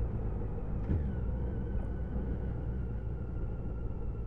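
Motorcycle riding along a road, heard from the rider's onboard microphone: a steady low engine and road rumble with a faint steady whine above it.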